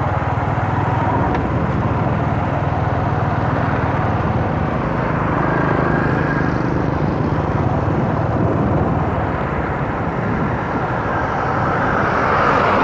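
A motorbike running steadily at riding speed, its engine hum mixed with tyre and road noise on a rough, damaged concrete road.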